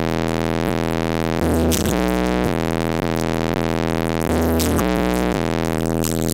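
Loud, bass-heavy electronic music played through a car audio system, an AudioQue HDC318-A 18-inch subwoofer driven by an AQ2200D amplifier at half an ohm, heard inside the vehicle cabin. The deep bass notes are held steady, and a brighter burst comes back about every three seconds.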